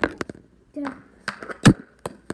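Several sharp clacks of a hockey stick striking a puck and the hard floor, the loudest near the end.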